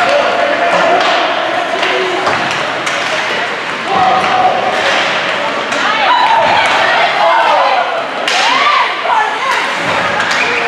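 Spectators in an ice rink shouting during hockey play, with sharp knocks of sticks and puck against the boards, echoing in the large hall.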